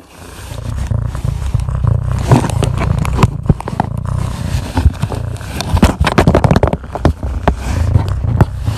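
A domestic cat purring loudly right against the microphone, a deep rumble that pulses unevenly. Frequent scrapes and knocks come from its fur and face rubbing against the phone.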